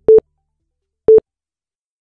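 Quiz countdown timer sound effect: short, low electronic beeps, one each second, twice here, with silence between.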